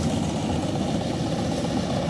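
Steady low drone of Yanmar combine harvesters' diesel engines running as they cut rice.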